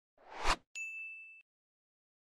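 Intro sound-effect sting: a whoosh that swells and stops abruptly, then a single bright, high ding that rings for about half a second and cuts off.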